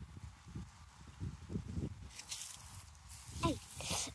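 Low bumps and rustling of a hand-held phone being carried through garden plants, with a rising hiss of brushing or rustling leaves in the second half. A short call that falls in pitch comes near the end.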